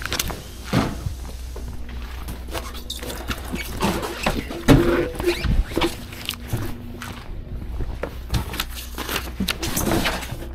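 Handling noises of a new car tyre being turned over and stood up by hand on asphalt: scattered knocks, scuffs and short squeaks of rubber, the loudest knock near the middle.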